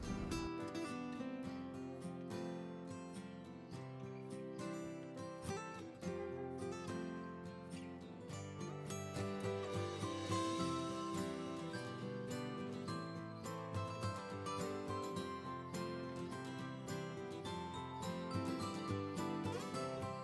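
Background music: acoustic guitar with strummed and plucked notes.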